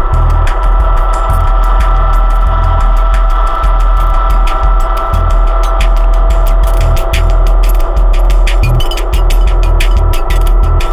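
Electronic music played live on a Eurorack modular synthesizer: a sustained drone of several steady tones over heavy bass pulses, with rapid, irregular clicky ticks on top.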